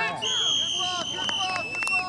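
A referee's whistle blown in one long, steady blast of nearly two seconds, dipping slightly in pitch near the end, to stop play. Voices on the field and sideline carry on underneath.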